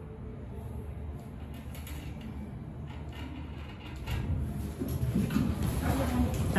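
Hydraulic glass elevator car running with a steady low rumble. About four seconds in it gets louder, with knocks and the sliding of its doors as it stops and opens.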